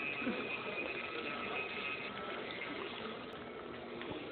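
Handheld electric nail grinder whining steadily as it files down a big toenail, fading out about two seconds in, over a steady background hum.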